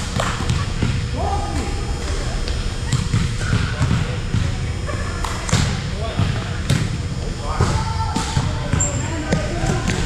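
A volleyball bouncing on a hardwood gym floor and being hit by players' hands, sharp smacks several times over. Players' voices and calls echo through the large hall.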